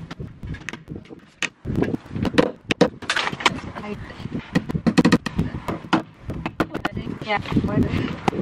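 Indistinct talk mixed with frequent sharp clicks and rustles close to the microphone as a string of plastic fairy lights is handled and hung on a post.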